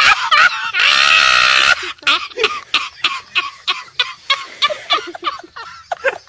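A loud drawn-out cry lasting about a second, then a person laughing in quick, repeated bursts, about three a second.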